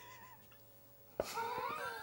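A man's high-pitched laugh, starting suddenly a little over a second in, its pitch wavering up and down in a squeaky giggle.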